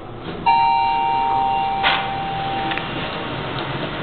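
Schindler elevator's single electronic arrival chime: one steady ding starting about half a second in and sounding for a second or two, the higher note ending first. A sharp clunk comes about two seconds in.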